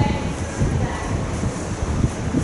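Horse cantering on a soft sand arena surface: dull, irregular hoofbeats over a steady low rumble.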